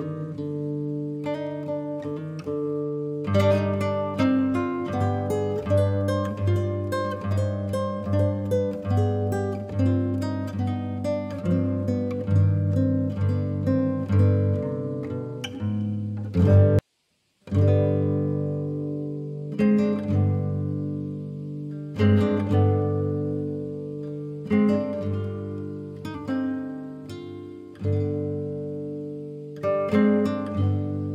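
Background music of acoustic guitar, plucked notes over held bass notes, cut by a sudden half-second silence a little past halfway.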